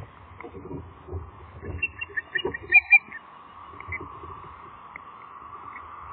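Osprey calling: a quick series of short, high chirps between about two and three seconds in, the last two the loudest. Low rustles and knocks from the nest and a steady background hiss run underneath.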